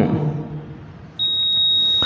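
A single steady high-pitched electronic tone, like a beep, about a second long, starting a little past halfway and cutting off sharply. Before it, the echo of a recited phrase dies away.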